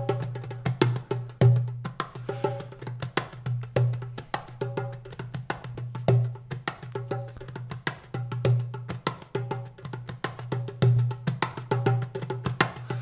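Recorded percussion part playing dry, with the glue compressor bypassed and no compression on it: a busy run of sharp, quick hits with a deeper thump about every second to second and a half, and short ringing pitched notes between them.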